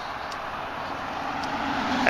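A road vehicle passing by, a steady rush of tyre and engine noise that grows gradually louder toward the end.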